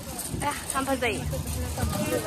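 People talking in short snatches, with a low rumble underneath.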